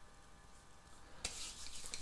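Hands rubbing water-based hair pomade between the palms: a soft, wet rubbing that starts about a second in.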